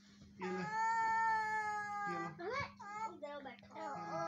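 A baby's voice: one long drawn-out cry lasting about a second and a half and falling slightly in pitch, followed by several shorter rising-and-falling fussy cries.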